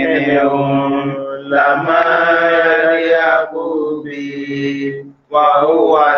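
A man chanting Quranic verses in Arabic into a microphone: long, drawn-out melodic phrases with held notes, broken by a brief pause for breath just after five seconds.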